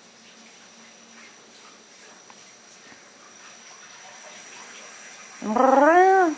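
A scruffy orange cat with a raspy voice gives one loud meow near the end, rising and then falling in pitch, after several quiet seconds.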